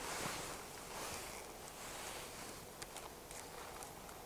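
Faint rustling and a few small clicks from hands working a cord around a pine branch, over quiet outdoor ambience.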